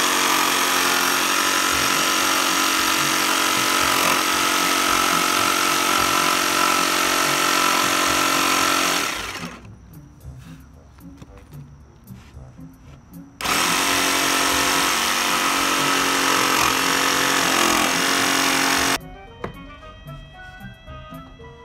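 Ryobi jigsaw sawing through a board: a steady buzz that runs for about nine seconds and winds down, then after a pause of about four seconds starts again suddenly and cuts for about five more seconds before stopping.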